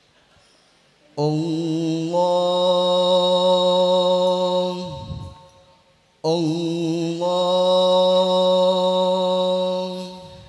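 Male voices of a sholawat group chanting in unison with no drums: two long held phrases, the first starting about a second in and the second about six seconds in. Each is steady and slides down in pitch as it ends.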